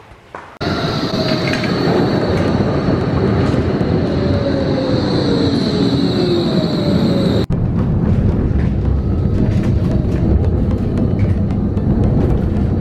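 A red Vienna tram passing close by, with a steady high squeal and a motor whine that falls in pitch. It cuts off abruptly about seven and a half seconds in and gives way to steady street traffic noise.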